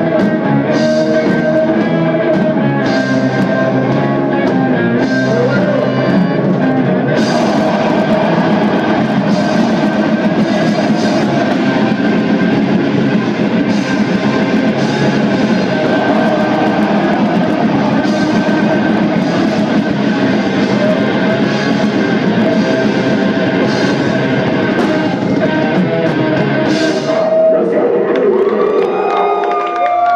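Black metal band playing live: distorted electric guitars, a drum kit with repeated cymbal crashes, and vocals. Near the end the full band drops out and sliding, bending guitar tones ring on.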